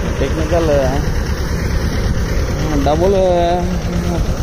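Engine of a motorised crop sprayer running steadily at constant speed while spray is being misted, with a man's voice speaking briefly over it twice.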